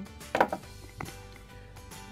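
Glass nail polish bottles knocking and clinking against each other in a packed bag: a quick cluster of sharp knocks about half a second in and a single click at about one second.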